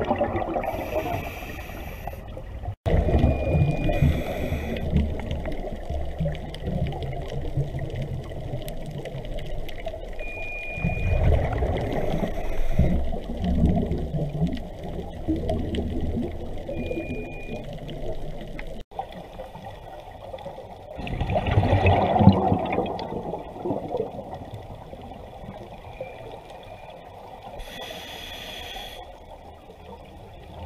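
Underwater sound through a GoPro housing: a scuba diver's regulator exhaust bubbles surging in noisy bursts every few seconds over a muffled rumble, the loudest about two-thirds of the way through. Three short high beeps are heard, and the sound cuts out abruptly twice.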